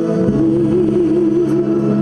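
A woman singing a held note with vibrato into a microphone over a karaoke backing track; the note slides in about a quarter second in.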